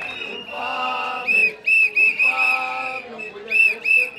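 Whistles blown by a protest crowd: a high held whistle tone with a run of short shrill blasts a little over a second in, and two more near the end, over lower voices.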